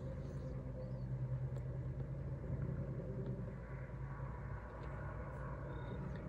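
Steady low rumble with a constant low hum, typical of distant traffic or an engine running some way off.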